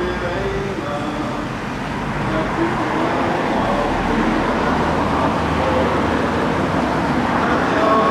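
Outdoor background noise: a steady low rumble under an even wash of noise, with faint scattered voices of people standing about.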